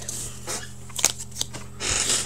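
Cards being handled and shuffled: soft rustling with a few light clicks, over a steady low hum.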